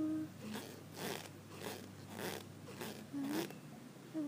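A woman's short breathy exhalations, about two a second, after a hum that trails off at the start; a brief rising vocal sound comes near the end.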